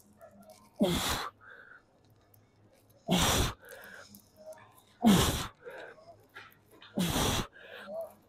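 A weightlifter's forceful breaths during barbell bench-press reps: four sharp, hissing exhalations, each with a short falling grunt, one about every two seconds, with quieter breathing between.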